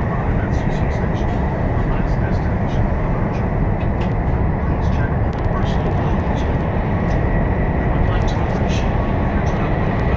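Steady running noise inside the cabin of an SRT high-speed train: a loud low rumble and rush, with a faint steady high whine and light scattered rattles.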